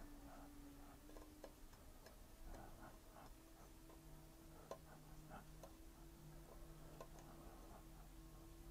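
Near silence: faint room tone with a low steady hum and a few soft, irregularly spaced ticks.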